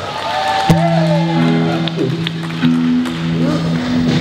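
A live band's amplified instruments holding a few long sustained chords, the upper notes shifting partway through.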